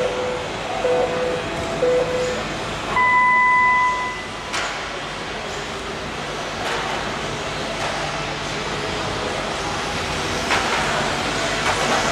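Race start signal: three short beeps about a second apart, then a longer, higher and louder beep about three seconds in. After it, a field of electric 1/12-scale RC pan cars runs off the start with a steady whir of motors and tyres.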